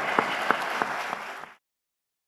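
Audience applause, with a few close, sharp claps standing out from the crowd's clapping. It fades out and cuts to silence about a second and a half in.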